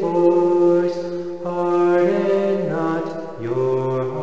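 A man singing a psalm response unaccompanied, holding long notes that step to a new pitch about every second, with a drop to a lower note near the end.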